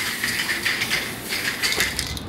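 Aerosol spray paint can hissing steadily as paint is sprayed onto a skateboard deck.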